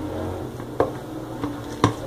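A spoon mixing mashed potato filling in a stainless steel bowl, with two sharp clinks of the spoon against the bowl about a second apart.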